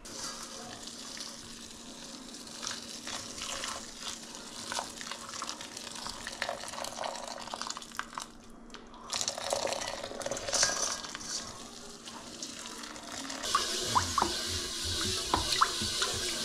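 Hot water pouring in a steady stream from an electric kettle into a steel pot over dried noodles, with a short pause midway. Near the end, a louder rasping with sharp clicks as a steel-wool pad scrubs a wet wok.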